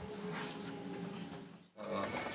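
Low, sustained growling drone from a horror film's opening-title soundtrack, played back on a computer. It fades away and cuts out briefly near the end.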